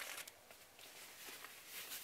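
Faint rustling and soft handling noise of hands rummaging inside a quilted fabric tote bag.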